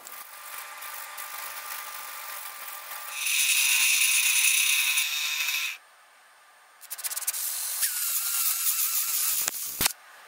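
A small electric motor tool runs with a high whine in two loud bursts, about two and a half and three seconds long, with a second of near silence between them. A quieter mechanical rattle comes before the bursts.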